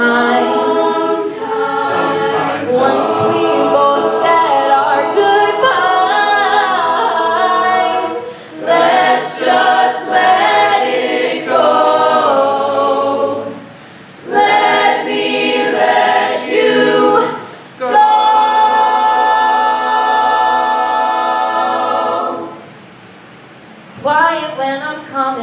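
Mixed-voice a cappella group singing in harmony without instruments. The phrases break off briefly a few times, then a long held chord cuts off shortly before the end.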